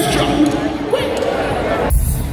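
A man's voice over a live concert PA, with heavy low thumps near the start and again near the end.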